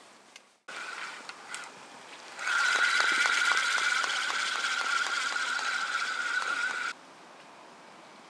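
Fixed-spool carp reel being wound in to retrieve a rig: a steady gear whir with fast fine clicking. It starts about two and a half seconds in and stops abruptly near the end.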